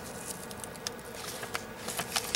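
Light, irregular clicks and scratches from handling a clear plastic packaging strip of surface-mount LEDs, over a faint steady hum.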